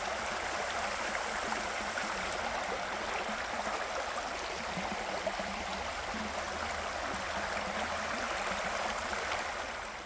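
Shallow creek water running over a rocky riffle: a steady rushing burble that drops away near the end.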